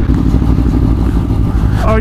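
Aprilia motorcycle running at road speed, a steady low engine and wind rumble with no change in pace.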